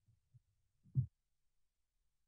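Near silence on a video-call line, broken by a few faint low thumps and one louder, short low thump about halfway through.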